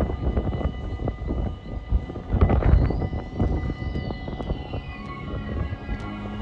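A distant train approaching on the line, heard as a low, uneven rumble that surges loudest a few seconds in.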